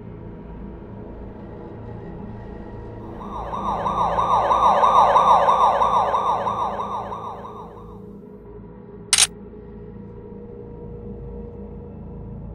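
A low ambient electronic drone runs throughout. About three seconds in, a synthesized warbling tone made of rapidly repeated rising sweeps swells up, then fades away by about eight seconds. About a second later comes one short, sharp electronic beep.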